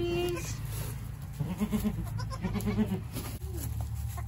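Saanen goats, a doe with her newborn kids, bleating: a short call right at the start, then soft, low calls in quick short runs about halfway through and again a second later.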